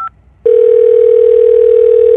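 A short phone keypad beep, then about half a second later a single loud, steady low telephone line tone that holds for about two seconds and cuts off sharply.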